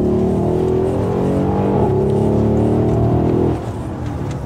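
Mercedes-AMG GLS 63's 5.5-litre twin-turbo V8 accelerating in Comfort mode, its exhaust held quieter and revs kept low. The engine note climbs slowly, dips briefly about two seconds in, and drops away near the end.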